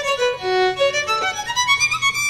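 Solo violin playing a flowing melodic phrase, its notes changing several times a second.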